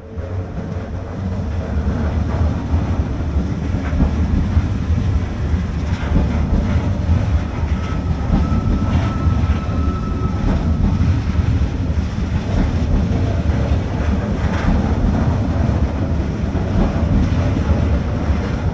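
Electric passenger train rolling into a station platform on the next track, a steady low rumble with scattered rail clicks. A faint high squeal, typical of braking, is held for a few seconds around the middle.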